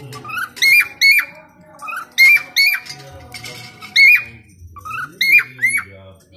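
Cockatiels calling: a run of sharp, loud chirps, about nine of them, several coming in quick pairs.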